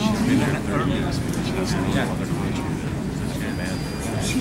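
Indistinct, overlapping voices of several people close by, over the steady low rumble of an airport terminal hall.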